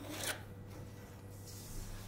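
Faint scraping and rustling on drafting paper: a pen drawn along a metal ruler and the ruler and paper sheets being shifted, with a short, louder scrape right at the start.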